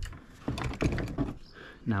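Short clicks, knocks and rustles of gear being handled on a plastic kayak and crate, beginning with a sharp click.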